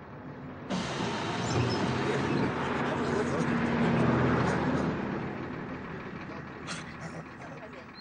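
Ikarus-260 city bus pulling up at a stop: a sudden loud hiss of compressed air about a second in, with the engine running beneath it, dying away over the last few seconds.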